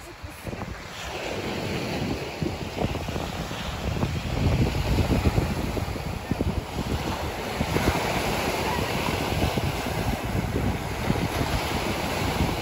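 Sea waves breaking and washing up a pebble shore, swelling and falling, with wind buffeting the microphone.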